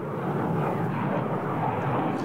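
Eurofighter Typhoon's twin EJ200 turbofan engines heard from the ground as the jet banks through a tight display turn, a steady rushing jet noise.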